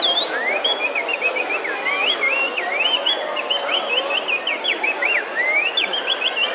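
Many shrill whistling chirps, each a quick rising or falling glide, overlap continuously above the murmur of a street crowd.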